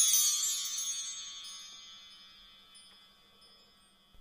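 Chimes ringing out with many high tones, fading away about two and a half seconds in and leaving near silence.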